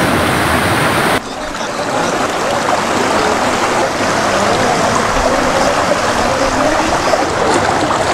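Fast-flowing floodwater rushing, a steady dense noise; about a second in it cuts abruptly to a slightly quieter, duller rush of water.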